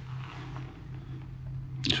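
A pause in a man's speech: a low, steady hum under faint hiss, and he starts talking again near the end.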